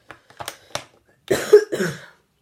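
A woman coughing twice in quick succession, a little over a second in, after a few soft clicks.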